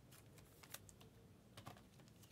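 A few faint, short clicks and light rustles of trading cards being handled and shuffled between the fingers.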